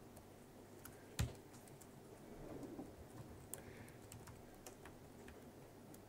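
Faint, scattered keystrokes on a laptop keyboard, with one sharper key click about a second in.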